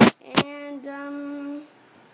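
Two sharp clicks, then a child's voice holding one sung note for about a second, steady in pitch.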